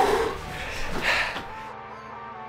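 A man blowing out a long, tired breath with pursed lips, a breathy "phew" of exhaustion, followed by a second breath; then background music with steady held notes comes in about one and a half seconds in.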